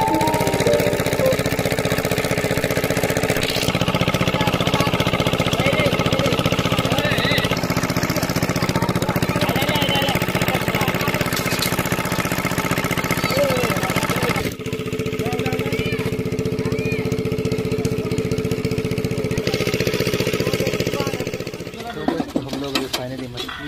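An engine running steadily, its tone shifting abruptly twice, about four seconds in and near the middle.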